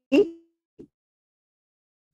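A short clipped vocal syllable from a call participant right at the start, then a faint blip, then dead silence as the call audio cuts out between utterances.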